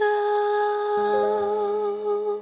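Song ending: a singer holds one long, slightly wavering note, and a low steady accompaniment note comes in about a second in.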